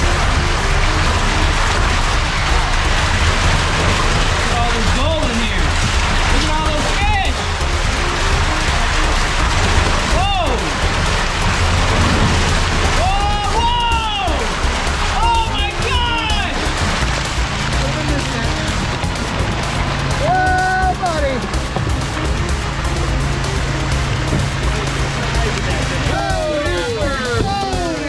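Water rushing and splashing as a tank load of trout is flushed out of a hatchery truck and down a stocking chute, over a steady low hum. Short rising-and-falling tones come and go over the rush several times.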